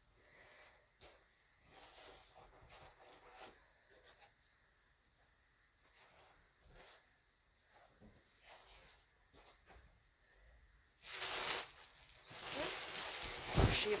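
Faint handling noises as balloons are lifted out of a cardboard box, then loud crinkling and rustling of a cupcake-print gift bag being grabbed for the last few seconds.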